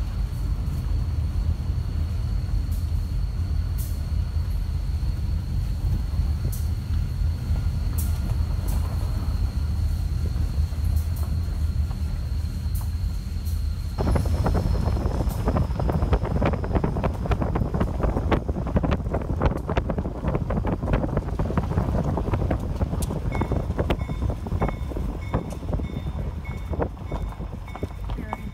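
Slow freight train running with a steady low rumble and a thin high whine over it. About halfway through, a dense rattling clatter suddenly takes over, and near the end a high tone starts beeping over and over.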